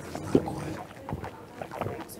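Room noise with a few short knocks, the loudest about a third of a second in.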